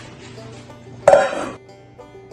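Light background music, with a short, loud clatter of metal mixing bowls about a second in as the last of the dry ingredients is tipped from one bowl into the other.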